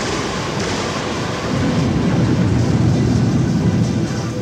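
Electronic dance music DJ mix at a breakdown: a passage of dense noise with faint held tones underneath, and a deep low rumble that swells about a second and a half in. The beat-driven music resumes after it.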